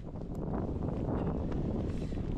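Wind on the camera microphone: a steady low rumbling noise.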